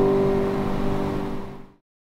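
The last chord of a piano piece rings and slowly fades, then is cut off abruptly about 1.7 seconds in, leaving dead silence.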